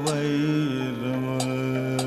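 Kathakali vocal music: a singer holds a long note that drops to a lower pitch about two-thirds of a second in. Sharp metallic percussion strikes keep time, one at the start and another about a second and a half in.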